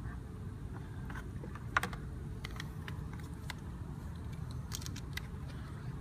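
Scattered light clicks and taps from handling small hard objects, with one sharper knock about two seconds in and a few quick clicks near the end, over a steady low hum.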